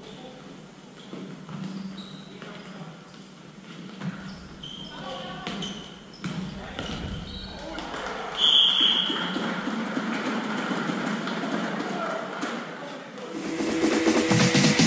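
Floorball play echoing in a large hall: players shouting and calling, with sharp clacks and thumps of sticks and the plastic ball. About eight seconds in there is a short shrill tone and the shouting grows louder. Dance music starts just before the end.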